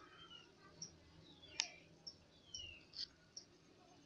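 A few faint, sharp clicks, the loudest about one and a half seconds in and another near three seconds, with faint short falling chirps in the background.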